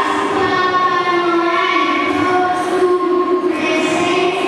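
Children singing slow, long-held notes, stepping from one pitch to the next every second or so.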